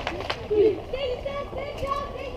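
Several girls' voices calling out and chattering in celebration, with a couple of sharp claps in the first moment.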